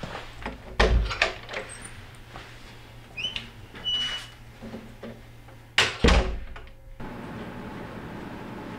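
A wooden dorm door being handled: a few clunks about a second in, short high squeaks around three to four seconds, then a louder door shut about six seconds in.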